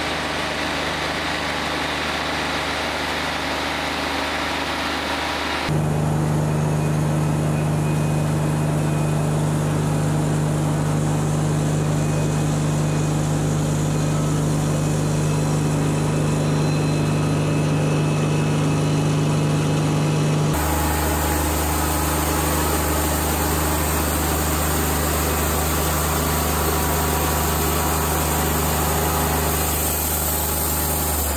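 Wood-Mizer LT40 Wide portable band sawmill running steadily as its band blade saws lengthwise through an American beech log. The engine's steady sound changes abruptly twice, about six seconds in and again about twenty seconds in.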